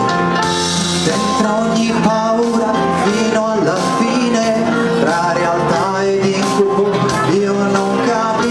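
Male vocalist singing a slow, melodic Italian pop ballad live into a handheld microphone over instrumental backing.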